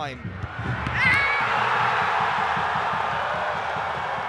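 Football stadium crowd cheering a goal: the roar swells about a second in, with a brief high call rising above it as it peaks, then holds and slowly eases toward the end.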